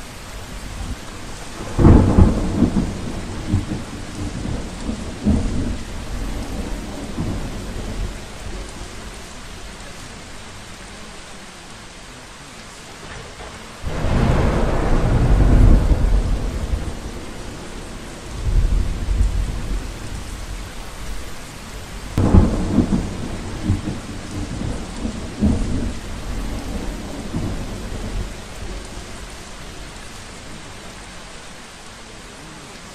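A thunderstorm: a steady hiss of rain, with loud rumbling thunder about two seconds in, again near the middle, and about two-thirds of the way through.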